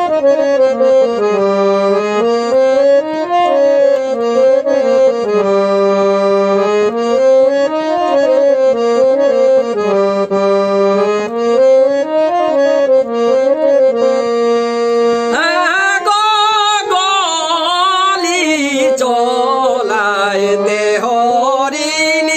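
Harmonium playing a Kudmali folk-song melody in steady stepping notes. About fifteen seconds in, a man's singing voice with a wavering vibrato joins over it.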